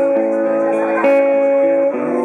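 Acoustic guitar played live, chords ringing and sustained, with a fresh strum about a second in.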